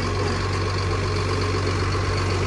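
A crane lorry's diesel engine idling steadily, a low even hum that does not change.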